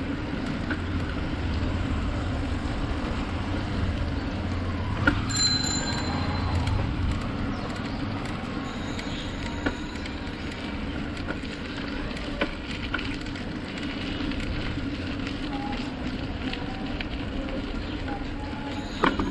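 Steady rumble of wind and tyre noise from a bicycle being ridden along a paved street, heard from a camera on the bike, with a few sharp clicks from bumps or the bike and a brief high tone about five seconds in.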